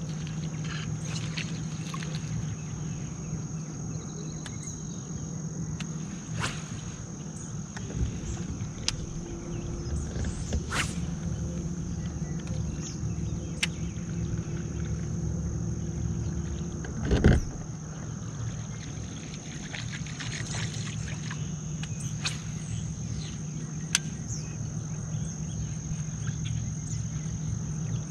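Bow-mounted electric trolling motor humming steadily, a little stronger from about 10 to 17 seconds in, under a steady high-pitched whine. Scattered light clicks and one louder knock a little past the middle.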